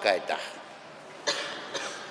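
The end of a man's spoken phrase, then a short cough a little over a second in.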